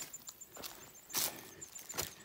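Footsteps on dry leaf litter and rocky trail, with soft steps and one louder crunching step a little past halfway.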